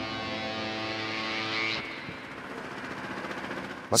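Background music with sustained notes, dropping in level about halfway through as it fades out.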